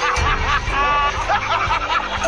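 Commentators laughing in short snickering bursts over background music with held notes.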